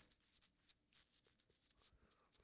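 Near silence: a pause in the narration, with only faint room tone.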